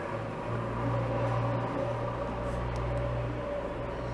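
Steady low hum with a light scratching haze of a graphite pencil drawn along paper as a smooth curve is traced.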